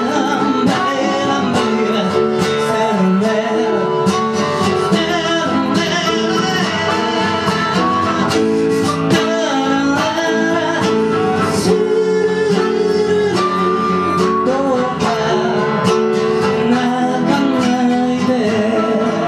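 Live acoustic guitar strumming with a blues harp (diatonic harmonica) playing over it, in an instrumental passage of an acoustic blues song.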